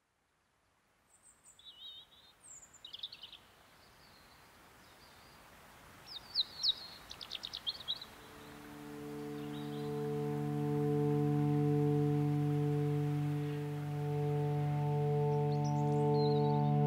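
Recorded opening of an album track: birdsong, a few chirps and a quick trill, over a soft rising hiss, then about halfway through a sustained drone chord fades in and swells.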